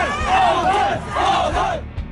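Several voices shouting 'hòutuì!' ('back off!') again and again in unison over a jostling crowd. It cuts off suddenly near the end.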